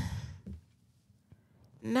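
A woman's sigh: one short breathy exhale right at the start that fades within half a second, followed by near silence until speech resumes near the end.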